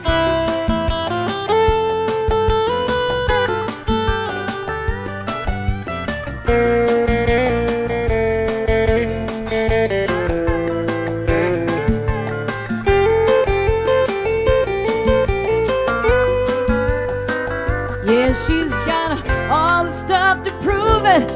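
Live trop-rock duo in an instrumental break: acoustic guitar and keyboard play a sustained melody line over a steady beat. A voice comes in near the end.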